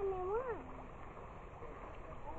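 A high voice making a short wordless sound that rises and falls in pitch twice, ending about half a second in; after that only faint background noise.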